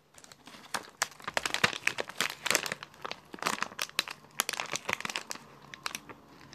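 Packaging being crinkled by hand: a rapid, irregular run of crackles that starts just before a second in and dies away near the end.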